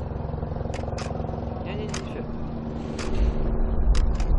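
Fireworks going off in the distance: sharp cracks a few times, and a deep rumble that swells louder over the last second. Beneath them runs a steady low hum like an idling engine.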